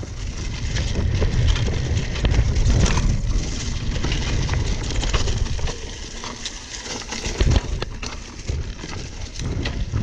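Niner RKT9 RDO cross-country mountain bike ridden fast over a trail covered in dry leaves: tyres crackling through the leaves and the bike rattling over the ground, with wind rumbling on the camera microphone. A sharp knock stands out about seven and a half seconds in.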